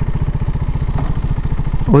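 Motorcycle engine idling with a steady, even pulse.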